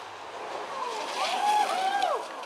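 Rally car engine approaching at speed on a gravel stage, its revs rising and falling with throttle and gear changes and getting louder, loudest in the second half as the car arrives at the corner.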